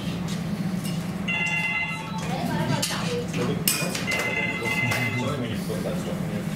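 Restaurant room noise: indistinct voices over a low steady hum, with light clicks and clinks of cutlery. Two held high tones of background music come about a second in and again about four seconds in.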